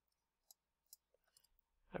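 Near silence with a few faint computer clicks as the table is edited: two sharp ticks about half a second apart near the middle, then a softer one.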